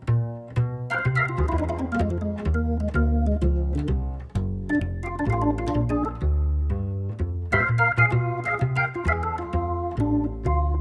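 Hard-bop jazz organ combo: a Hammond organ plays a moving melody line over a walking bass that changes note about twice a second, with drums and cymbal strokes keeping time.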